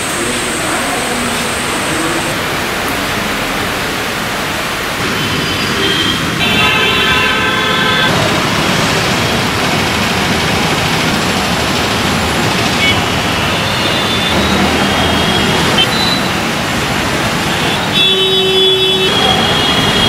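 Road traffic running steadily, with vehicle horns honking several times: a long blast about six seconds in, shorter toots later, and another blast near the end.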